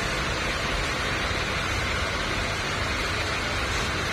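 A steady, even hiss of background noise with no distinct events in it.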